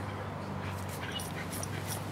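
American pit bull terrier hanging from a spring-pole rope toy and tugging, with dog sounds: a steady low strain in the throat and short sharp noises several times a second.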